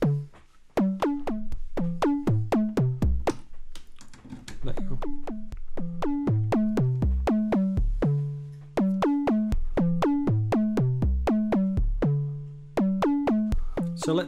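Noise Reap Foundation Eurorack kick drum module playing a fast sequenced pattern of short pitched synth drum hits, about four a second, the pitch stepping up and down like a bass line. Two longer, lower ringing notes come a little past halfway and near the end.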